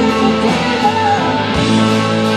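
Live blues-rock band playing: electric guitar with bent, gliding lead notes over bass and drums.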